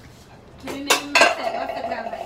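Dishes being washed by hand, knocking together in a basin: two sharp clinks about a second in, then a steady tone that holds on.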